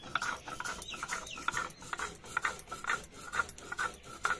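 A stone roller rubbed back and forth on a stone grinding slab (shil-nora), grinding soaked poppy seeds and melon seeds into a paste. It makes a rhythmic grating scrape, about two strokes a second.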